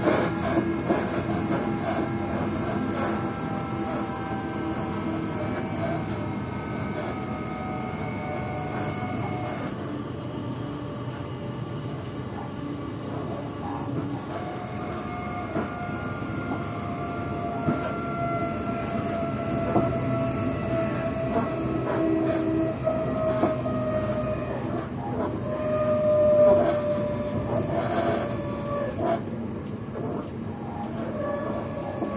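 Passenger train running on the rails, heard from inside the carriage: a steady rumble with scattered clicks, and several whining tones that slowly fall in pitch. The sound swells briefly about 26 seconds in.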